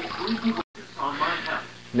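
Kitchen faucet sprayer running water over salmon in a plastic colander, with a man's voice over it, cut off abruptly by an edit just over half a second in; after the cut only quiet room sound and a few faint spoken sounds.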